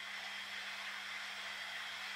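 Faint steady hiss with a low, even hum under it: room tone in a pause between speech.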